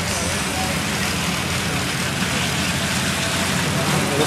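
Steady low mechanical drone of running fairground ride machinery under an even wash of noise.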